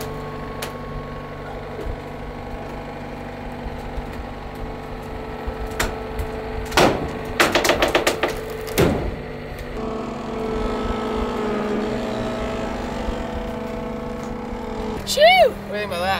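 John Deere 325G compact track loader's diesel engine running steadily, with a quick cluster of knocks and clanks about seven to nine seconds in. The engine note shifts higher for several seconds after that.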